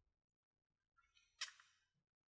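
Near silence, broken by one brief, faint high-pitched sound about one and a half seconds in.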